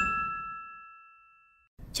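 Logo-sting chime sound effect: a bright ding of a few clear tones that rings on steadily and stops after about a second and a half, over the fading tail of a whoosh.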